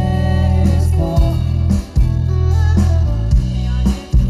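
Live pop band playing, with heavy bass and drums, while a woman sings lead into a microphone.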